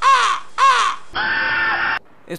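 Two crow caws, each rising and falling in pitch, followed after a short gap by a different steady held tone for the last second or so.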